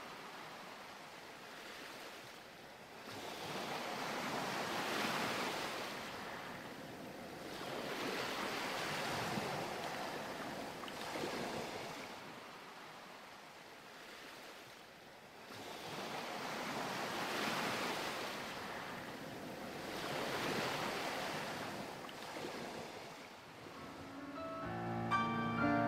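Ocean waves washing, the sound swelling and fading every four seconds or so.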